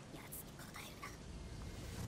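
Faint, whisper-quiet voices speaking, far below normal talking level.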